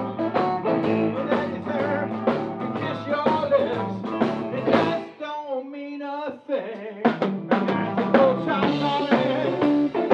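Live blues band playing: electric guitars, keyboard and drum kit. About five seconds in, the band stops for a moment, leaving one wavering note that slides down, then the full band comes back in.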